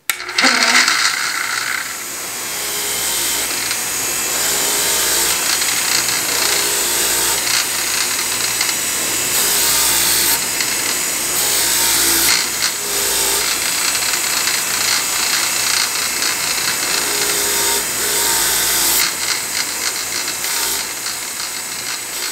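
Bench grinder running with a fine wire wheel, its wire bristles scratching against a steel knife blade to strip off light surface rust. The hissing scratch rises and falls as the blade is moved across the wheel, over a low motor hum.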